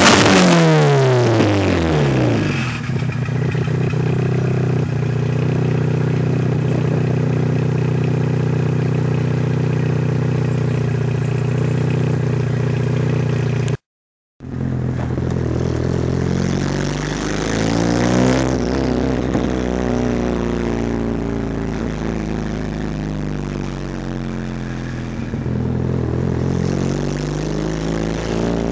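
Mitsubishi Lancer Evolution VIII's turbocharged four-cylinder with an open downpipe: the revs fall back to a steady idle over the first couple of seconds and it idles loudly. After a short break it is heard from inside the cabin while driving, the revs climbing and falling a few times with the throttle and gear changes.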